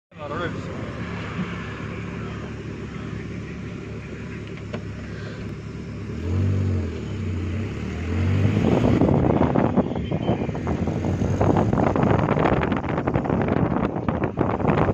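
A vehicle driving along a road, its engine running with a steady low hum. A brief wavering tone comes in about six seconds in, and from about eight seconds in loud wind buffeting on the microphone takes over.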